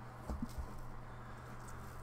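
A few faint low thumps in the first second, over a steady low hum.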